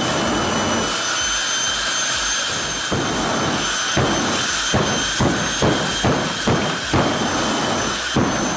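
Pratt & Whitney J60 jet engine of the FireForce 3 jet car running, a loud steady rush of noise with a high whine over it. From about midway it is broken by a quick series of pulses, about three a second.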